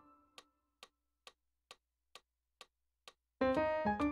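Metronome clicking steadily at about two clicks a second, heard alone in a pause of the digital piano playing after a low note dies away; dense atonal piano chords start again near the end.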